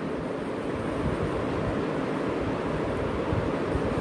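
A steady rushing background noise with no distinct events.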